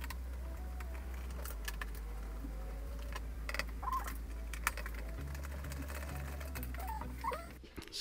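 Scattered light clicks and taps of hand tools working on the bolts of a Ducati 848's air intake tubes, over a steady low hum.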